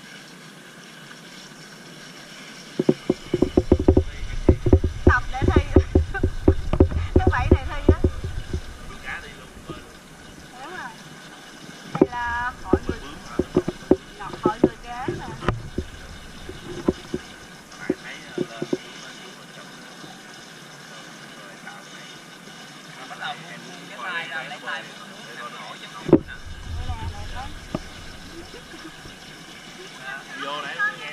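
Pool water splashing and slapping close to the microphone in a quick series of knocks for several seconds, then quieter lapping with brief voices.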